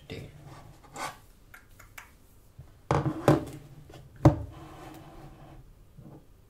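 A few knocks and rubs on a wooden tabletop: handling noises, the loudest a sharp knock about four seconds in.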